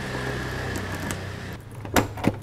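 Key worked by hand in the trunk lock of a BMW E36 325i Cabriolet, ending in a sharp click near the end as the lock turns. A steady low hum in the background fades out a little past halfway.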